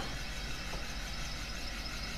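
A steady low rumble with a hiss over it, even throughout.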